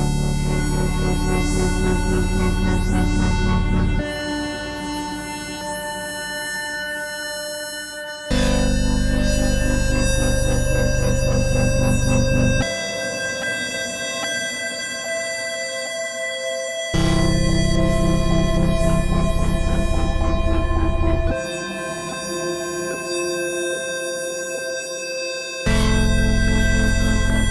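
Ambient electronic music from synthesizers: long sustained chords, with a deep bass layer that comes in and drops out in turn about every four seconds, each return a sudden step up in loudness.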